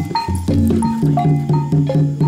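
Gamelan-style kuda kepang accompaniment: a quick, even run of struck metallic notes that ring and fade, over low sustained tones.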